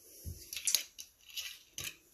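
A bottle of strawberry Vok liqueur being handled and its plastic screw cap twisted open: a low thump, then a few quick clicks and crackles.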